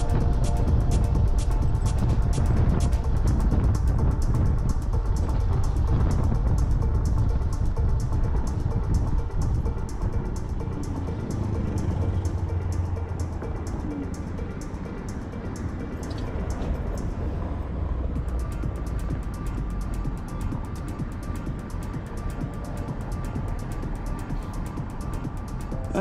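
Background music with a steady beat, over the low rumble of wind and road noise from a fast electric scooter ride; the rumble eases about halfway through as the scooter slows to a stop.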